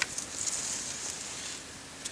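Spruce boughs rustling faintly as they are handled, with a sharp click at the start and a few small ticks just after.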